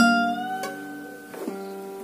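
Acoustic guitar played fingerstyle: a note struck at the start rings out and slowly fades, its top bending slightly upward, and two softer notes are plucked later as it dies away.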